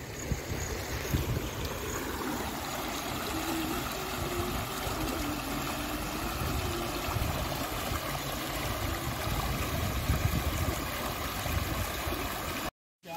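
A shallow stream rushing over stones and small rapids: a steady flow of splashing water.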